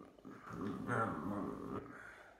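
A wavering, voice-like vocal sound that lasts just over a second, starting about half a second in.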